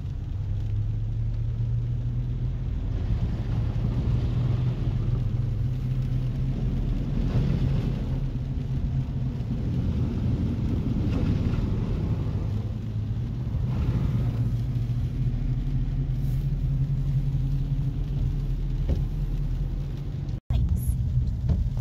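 Car driving on a rain-soaked road, heard from inside the cabin: a steady low engine and road drone with the hiss of tyres on wet pavement. A few brief swells of hiss come through every three or four seconds.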